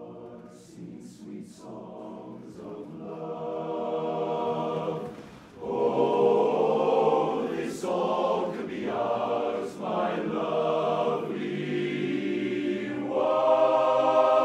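Men's barbershop chorus singing a cappella in close harmony on sustained chords. The singing starts soft, then swells into a much louder passage about six seconds in.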